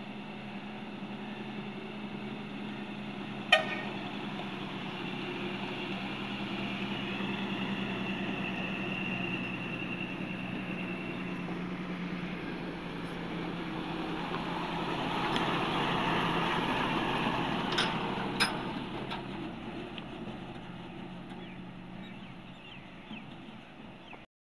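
Heavily loaded dump trucks driving past on a gravel road: a steady diesel engine drone with tyre noise, swelling as one truck passes about 15 to 18 seconds in and fading toward the end. A few sharp clicks cut through, one about three and a half seconds in and two near the eighteen-second mark.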